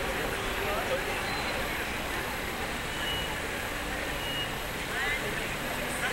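Busy city street ambience: a steady rumble of traffic with scattered voices of passers-by, and a couple of short, faint high beeps.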